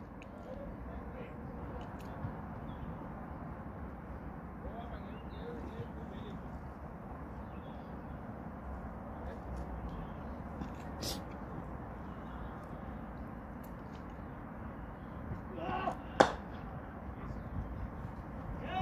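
Steady, faint outdoor ambience of a cricket field, then near the end a brief shout and one sharp crack of a cricket bat striking the ball in a straight drive.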